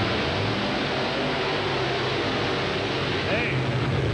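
Two monster trucks racing side by side, their engines at full throttle in a loud, steady low drone that swells about three seconds in. Near the end a commentator shouts "Hey".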